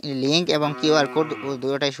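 A man talking, opening with a long drawn-out vowel that dips and rises in pitch, then running on in short syllables.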